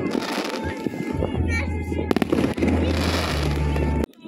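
New Year fireworks going off, with a cluster of sharp bangs and crackles about two seconds in. People's voices and background music are heard under the fireworks.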